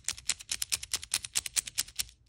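A miniature plastic GAN speed cube being turned quickly in the fingers: a fast, steady run of small plastic clicks, about ten a second, as the layers snap round.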